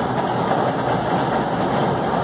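Steady mechanical running noise, like a motor, with no clear change.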